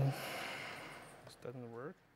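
A man's hesitation sounds: the tail of a held "uh", a breathy exhale fading over the first second, then a short hum that dips and rises in pitch about one and a half seconds in.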